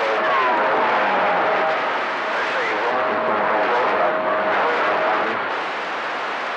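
CB radio receiver on channel 28 hissing with band noise during skip conditions, open with nobody transmitting. A thin steady whistle from a carrier beat comes in twice, and faint warbling tones glide in pitch under the hiss.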